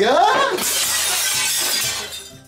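Loud crash of shattering glass and breakage starting about half a second in and lasting over a second before fading: a comic sound effect for a fall.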